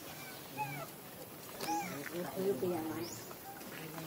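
Indistinct voices talking in the background, with a few short high squeaky calls in the first half.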